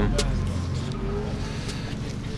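Car engines running nearby: a low rumble that eases after about half a second into a steady hum.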